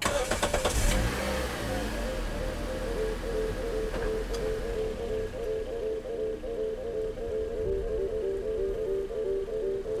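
A car engine starts with a short loud burst, then runs with a steady low rumble as the car gets under way. A slow, repeating music score plays over it.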